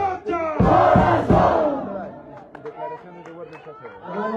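Crowd shouting together, loud for about the first two seconds, then dying down to scattered voices.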